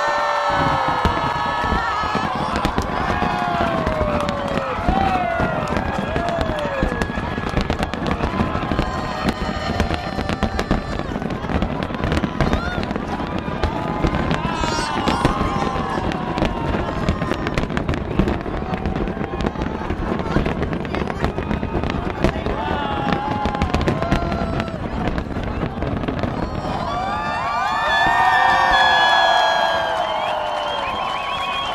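Aerial fireworks going off in rapid succession, a steady stream of bangs and crackles, with onlookers' voices exclaiming over it. Near the end a louder swell of crowd cheering rises as the bursts die away.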